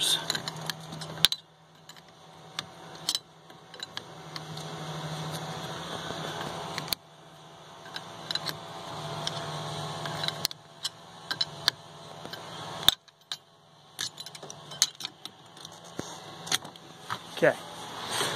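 Wrench clicking and clinking against the brass bleeder fittings of a SeaStar hydraulic steering cylinder as the bleed screws are tightened closed, in scattered sharp metallic clicks over a low steady hum.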